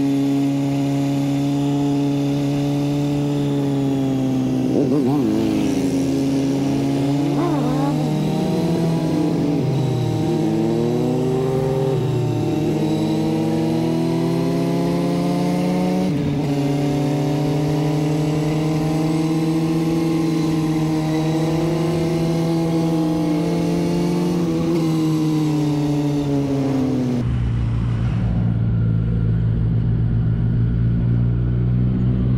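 Motorcycle engine running under way, a steady engine note that rises and falls in pitch several times in the first third as the throttle is worked. Near the end the sound changes abruptly to a duller low rumble.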